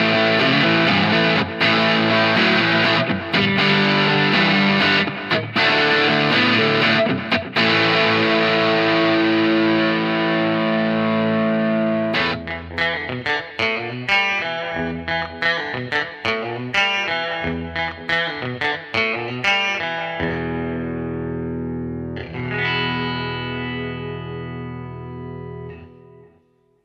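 Harley Benton TE-62DB Telecaster-style electric guitar played with distortion: driving chords with short stops for the first half, then quick picked single-note runs, ending on a held chord that rings and slowly fades.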